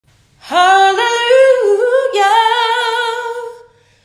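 A woman singing one unaccompanied phrase. Her voice enters about half a second in with a quick upward slide, holds with small shifts in pitch and vibrato, and fades out near the end.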